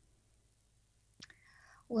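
A pause in a conversation: about a second of near silence, then a single mouth click and a short intake of breath. Near the end a voice begins speaking.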